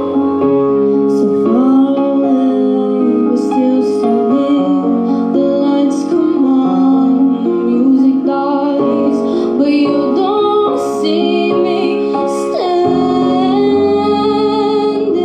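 A woman singing live through a PA system over instrumental backing music, with sustained keyboard-like chords under her voice.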